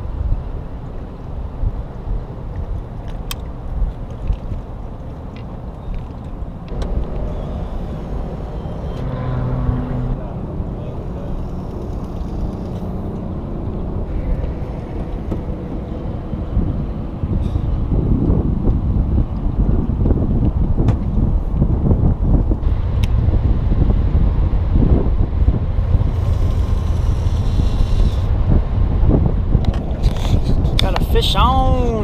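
Wind buffeting the camera microphone outdoors, a steady low rumble that grows louder about halfway through, with a few brief clicks.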